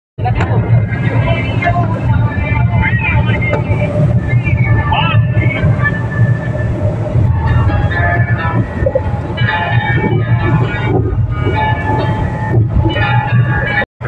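Car driving, heard from inside the cabin: a steady low engine and road rumble runs under voices and music. The sound cuts out abruptly just before the end.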